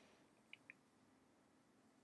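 Near silence: room tone, with two faint short ticks about half a second in.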